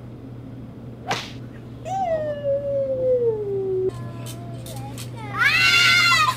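A sharp swish and smack about a second in, as a toddler swings a toy plastic golf club at a ball teed up in a man's mouth, followed by a long cry falling slowly in pitch. Near the end comes a loud, high yell that rises and falls.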